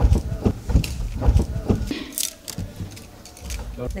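A hand iron being pushed over cloth on a cot: a run of irregular soft knocks and cloth rustling. It eases off a little past halfway.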